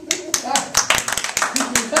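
A few people clapping their hands in quick, uneven claps, mixed with laughter and voices.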